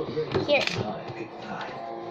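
Mostly a child's speech over faint background music, with a few light knocks as a hand handles a hollow plastic toy box on a table.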